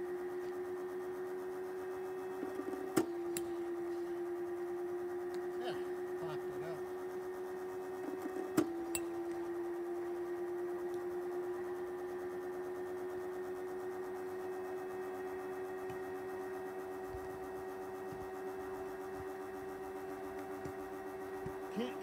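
A small pitching machine's motor whining steadily at one pitch, the whine dipping briefly twice as the machine throws a ball. Each throw comes with a sharp crack of a metal bat hitting the ball, about five and a half seconds apart.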